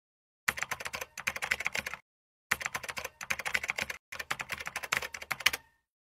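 Computer keyboard typing sound effect: rapid key clicks in three runs of about a second and a half each, with short silent pauses between, as text is typed out on screen.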